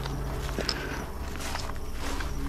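Footsteps crunching on a dirt track, a scatter of short irregular steps and scuffs over a steady low hum.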